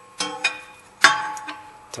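A large steel wrench clinking against the fan clutch nut as it is fitted on. There are three sharp metallic clinks, the last and loudest about a second in, and each leaves a ringing tone that slowly fades.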